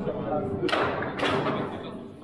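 Two sharp knocks, about half a second apart, over steady chatter of voices in a large hall.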